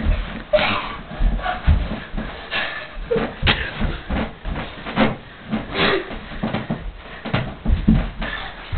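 Two people wrestling: scuffling, rustling and irregular thumps of bodies, with a few short grunts and hard breaths.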